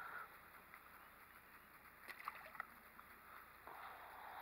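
Near silence: faint outdoor background with a few faint clicks a little over two seconds in.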